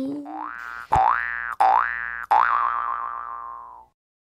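Cartoon 'boing' sound effect played four times in quick succession, each a springy upward-gliding twang. The last one rings on with a wobble and fades before cutting off.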